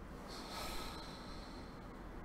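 A man's single breath close to the microphone, lasting about a second and a half, with a faint whistling edge.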